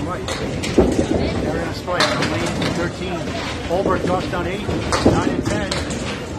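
Candlepin bowling alley sounds: balls rolling down wooden lanes and hitting pins, with several sharp clatters, under a background of people talking.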